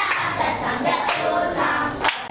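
A class of young schoolchildren singing together in unison, holding notes.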